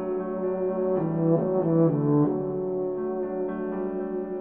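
Euphonium playing a slow, legato melody in its mellow middle-low register, with piano accompaniment. About a second in, it moves through a few quicker notes, then settles onto a held note.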